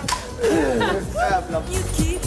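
A group laughing and exclaiming over background dance music; near the end the music with a steady beat comes up louder.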